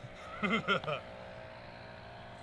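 A brief low voice, then a faint, steady mechanical hum like a distant engine.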